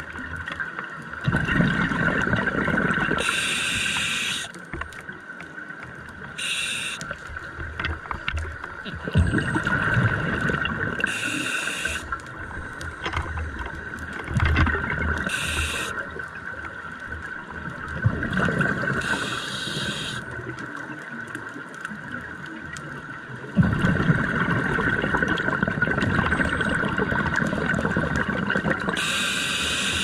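A scuba diver breathing underwater through an open-circuit regulator: four long rushes of exhaled bubbles spaced several seconds apart, with short hissing breaths between them.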